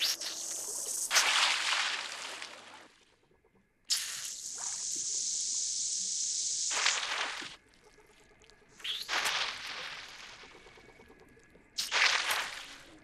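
Hissing, whooshing sounds in four separate bursts, one a steady hiss of about three seconds that starts and stops sharply; the last, near the end, comes as the archerfish's jet of water strikes the insect on the twig.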